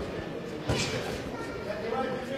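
Crowd and hall ambience in a boxing arena, with one short sharp sound about two-thirds of a second in.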